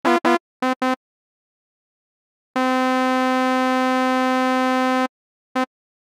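Malström synthesizer in Reason 9 sounding test notes of one pitch from a square-wave oscillator: four short notes in the first second, the first two bending in pitch, then one note held for about two and a half seconds and a last short note near the end. These are key presses made while oscillator A's envelope is being shaped, at an early stage of building a patch that imitates a shehnai.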